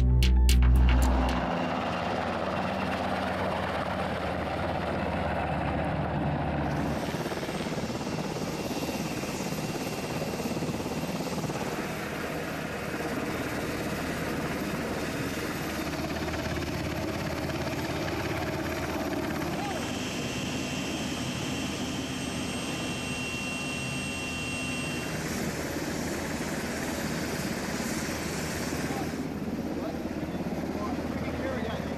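UH-60 Black Hawk helicopter running, a steady rotor and turbine noise that changes character abruptly at several cuts. Background music ends about a second in.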